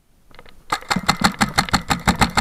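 Paintball marker firing a rapid burst of about ten shots a second, starting under a second in and lasting well over a second.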